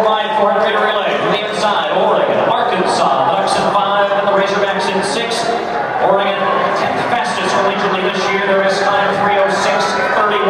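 A man's voice talking continuously, calling the race.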